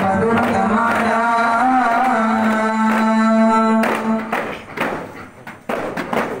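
Group of voices singing a chant to the beat of arabana frame drums, ending on a long held note; a little after four seconds in the singing stops and only the drum strikes go on.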